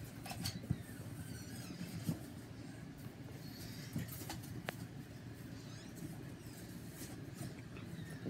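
Faint rustling and scratching handling noise, with a few short sharp clicks scattered through it.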